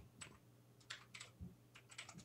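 Faint computer keyboard typing: a single keystroke, then short runs of keystrokes from about a second in.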